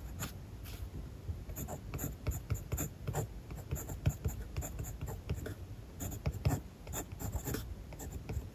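Kaweco Special mechanical pencil writing Japanese characters on textured paper: a run of short, irregular scratches and taps of the lead, stroke by stroke.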